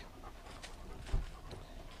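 Black Labrador retriever panting softly, with a brief low thump just over a second in.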